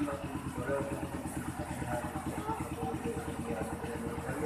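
A man's voice reciting a prayer into a microphone, over the steady low throb of an engine running at idle.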